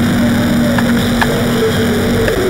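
Loud, steady electronic static with a low hum running under it, a TV-interference glitch sound effect.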